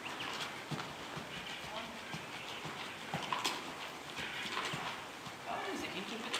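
A horse walking on soft arena footing: a run of faint, irregular hoof footfalls.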